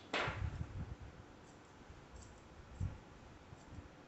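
Faint clicking of grooming scissors snipping hair at the side of a dog's face. A brief swishing rush comes just after the start, and a few dull low thumps follow in the first second and again near three seconds in.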